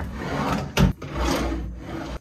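Wooden vanity drawers being worked by hand: a sharp knock a little under a second in, typical of a drawer being pushed shut, and otherwise wood rubbing on wood as drawers slide on their runners.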